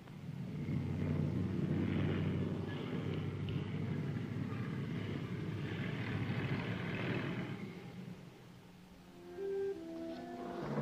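City street traffic: a rumble of car engines that starts abruptly and fades away about eight seconds in.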